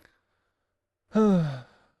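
A man's voiced sigh about a second in, falling in pitch and trailing off, after a second of near silence. It is a sigh of weary resignation.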